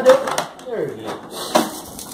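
Mostly a man's speech: one word at the start and a short falling vocal sound after it, with a single light knock about one and a half seconds in.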